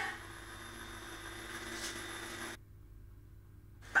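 Quiet room tone: a faint steady hum with a few thin tones. It drops suddenly to near silence about two and a half seconds in, then comes back just before the end.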